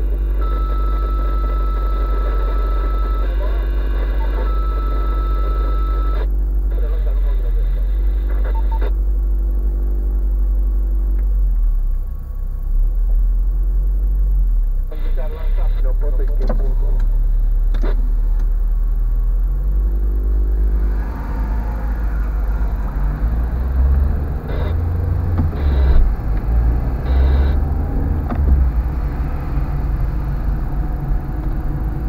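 Car engine heard from inside the cabin, idling as a steady low drone while the car waits; about two-thirds of the way in the car pulls away, and the engine and road noise grow louder and rougher.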